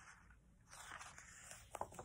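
Faint rustle of a paper picture-book page being turned by hand, lasting about a second, with a couple of sharp clicks just before the end.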